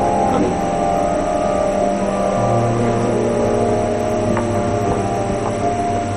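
Background music of soft, held chords, with a lower bass note coming in a little over two seconds in.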